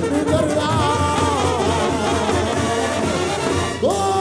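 Mexican banda brass band playing live: trombones and trumpets carrying a moving melody over a pulsing low bass. Just before the end, the brass slides upward into a held chord.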